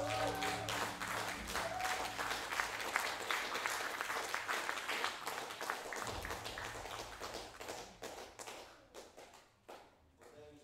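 Audience applause at the end of a piece: dense clapping that follows the band's last held notes, then thins out and fades away over several seconds.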